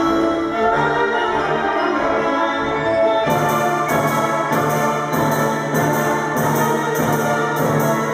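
A children's school wind band with marimbas and percussion playing a piece, sustained wind and brass notes over mallet parts. About three seconds in, a steady beat of light, sharp percussion strikes joins in.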